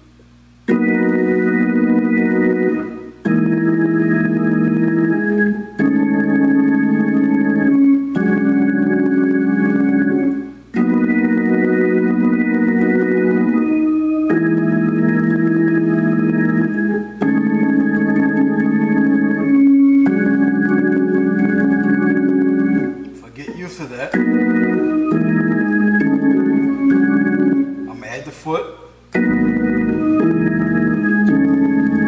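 Hammond organ playing a gospel 'preaching chord' progression in E flat. Sustained full chords change every two to three seconds over a held pedal bass, with short breaks between some of the chords.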